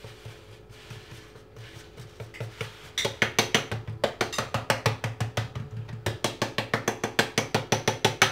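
A fork pricking puff pastry in a fluted metal tart tin: the tines click against the tin's base through the dough. The clicks are faint and sparse at first, then from about three seconds in come quickly and evenly, about five or six a second.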